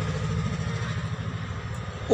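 A steady low mechanical hum, as of a motor running, with a faint even hiss behind it.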